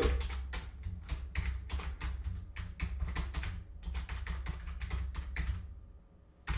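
Typing on a computer keyboard: a run of quick, irregular key clicks, several a second, stopping shortly before the end, over a low rumble.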